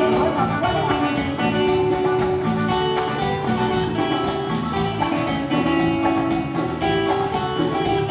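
Live Latin dance band playing with a steady beat: congas, a double-headed drum, drum kit and electric guitar, in a passage without words.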